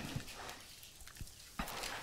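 A few faint, short knocks and rustles over quiet room tone.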